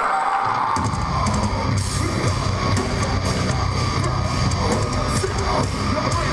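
A heavy metal band playing loud live through a venue PA: distorted guitars, bass and a drum kit come in heavily just under a second in, with fast, dense drumming and cymbals after that.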